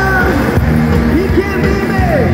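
Live band playing loud music with a lead vocal, from amplified electric guitars, a drum kit and keyboard, heard from among the audience.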